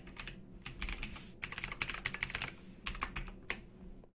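Computer keyboard typing: runs of quick key clicks broken by short pauses.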